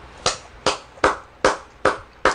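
Hands clapping: five sharp claps at an even pace of about two and a half a second.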